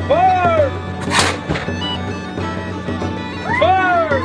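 Bagpipe music over a steady low drone. Twice, a high call rises and falls in pitch, and about a second in a short sharp rush of noise cuts across it.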